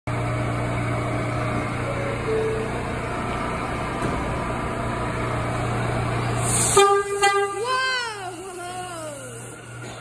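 Stationary New York City Subway train humming steadily at the platform, then about seven seconds in a short horn blast that breaks off and sounds again briefly. A voice follows it.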